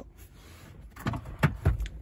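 Car glovebox being unlatched and opened: a few sharp clicks about halfway through, then a soft low thump as the lid comes down.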